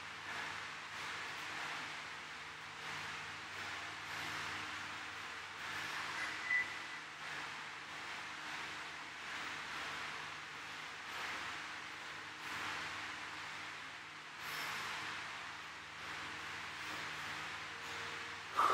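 A man breathing hard, winded from burpees, with a breath every second or two over faint steady room hum. A brief high chirp about six seconds in.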